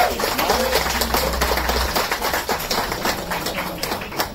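Between songs, scattered clicks and taps from instruments being handled on stage, over a low hum that stops about halfway through. Faint voices are in the background.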